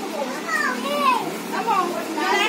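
Girls' and children's high-pitched voices chattering and calling out, with no other clear sound.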